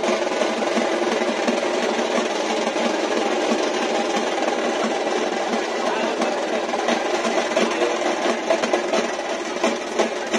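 Drumming over the steady noise of a large crowd.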